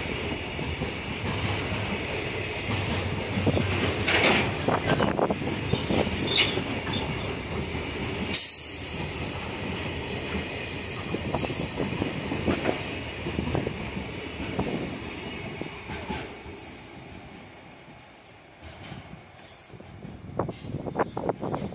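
Freight train container wagons rolling past close by, their wheels clattering over the rail joints with a steady high wheel squeal. The sound fades away as the end of the train passes, about three-quarters of the way through.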